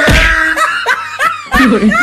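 Laughter: a run of short, high laughs, each rising and falling in pitch.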